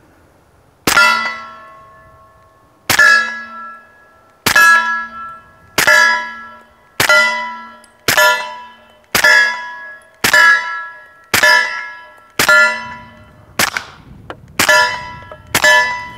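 Smith & Wesson M&P 45 pistol fired through an AAC Tirant 45 suppressor with 230-grain .45 ACP Hush ammunition. There are thirteen shots, about one a second. Each is a muted report, followed at once by the clang of a steel target that rings and fades over about a second.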